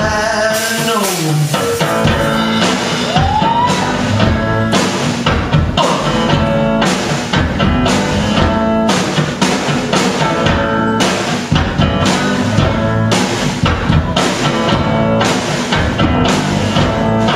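Live instrumental break of a rock song: a hollow-body electric guitar playing over a steady drum beat on snare and bass drum, with one guitar note sliding upward about three seconds in.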